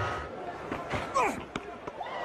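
A sharp knock about a second in, a cricket ball striking the back of a batsman's helmet from a bouncer, amid a voice-like cry.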